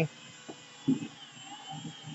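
Cordless drill spinning a small buffing wheel against the painted steel body of a toy trailer: a faint, steady motor whine whose pitch wavers slightly as the wheel is pressed on. A couple of light knocks come about halfway through.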